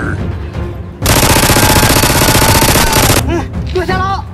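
A burst of rapid automatic gunfire, a sound effect standing in for the Nerf blasters, lasting about two seconds from a second in. Shouts follow near the end, over background music.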